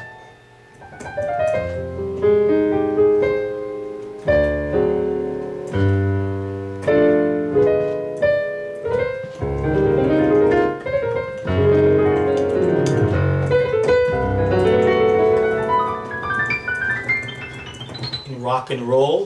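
Piano sound from a digital keyboard: a two-handed passage of chords and melodic runs, with a short lull just after the start, that works in a G7 dominant seventh chord.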